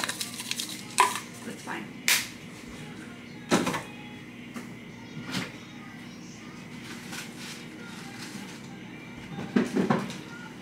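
Scattered kitchen knocks and clatters: five or so sharp strokes spaced a second or more apart, the loudest about a second in and near the end, over a low steady room hum.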